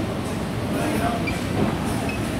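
Crowded buffet restaurant room noise: a steady din of indistinct background chatter over a constant low rumble.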